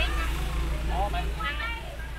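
People talking in the local language at a market stall, over a steady low rumble.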